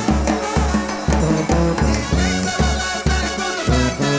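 Brass band playing an upbeat tune: a low sousaphone bass line of short notes about twice a second under trumpets and saxophone.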